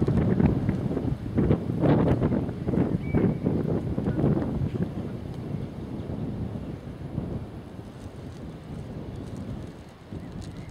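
Wind buffeting the camera's microphone, gusting strongly in the first half and easing off after about five seconds.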